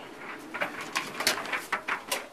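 A quick run of clicks and knocks, close to the microphone, as a laundry machine is handled.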